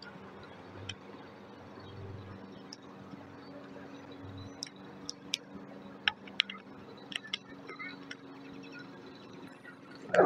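Faint scattered clicks and ticks of a plastic squeegee and fingertips rubbing a vinyl decal's transfer tape down onto a car's rear window glass, over a faint steady hum.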